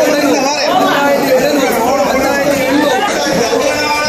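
Several men's voices talking over one another: busy market chatter among the people at a fish stall.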